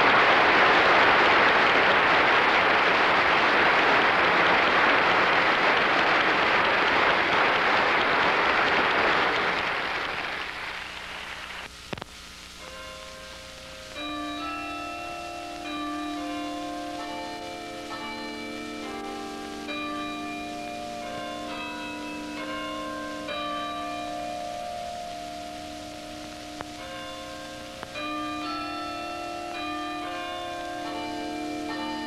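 Audience applauding, fading away over the first ten seconds or so. Then, from about fourteen seconds in, a set of tuned bells rings a slow melody, notes overlapping as they ring on.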